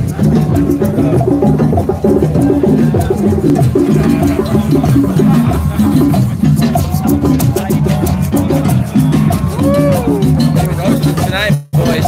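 Drum circle: many hand drums played together in a dense, steady rhythm, with shakers rattling over it and voices in the crowd. The sound cuts out for a moment near the end.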